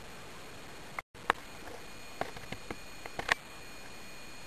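Underwater recording: a steady hiss, cut briefly about a second in, then a handful of sharp, irregularly spaced clicks.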